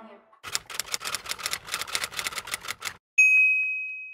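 Typewriter keys clacking in a quick, even run of about twenty strokes, roughly seven a second. Then a single loud bell ding that rings on and fades, like a typewriter's end-of-line bell.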